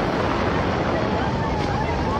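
Hurricane-force wind and driving rain: a steady, loud rush of noise, with a faint wavering whistle riding above it.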